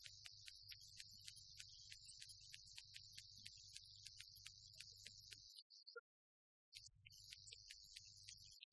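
Near silence: a faint low hum and high hiss with faint ticks about four a second, dropping out completely for a moment about six seconds in.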